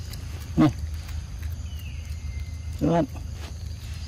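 Two short, low vocal sounds about two seconds apart, the first falling in pitch, over a steady low rumble. A faint falling whistle, like a bird's, comes between them.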